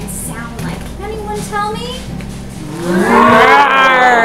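People imitating a lion's roar: a loud, drawn-out vocal roar that rises and then falls in pitch, starting near the end, over a ringing acoustic guitar. Quieter talk comes before it.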